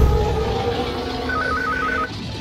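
Sound-designed logo intro effect: a deep boom at the start that gives way to a sustained rushing noise with steady tones under it, and a rapid alternating two-note electronic beeping coming in a bit past halfway.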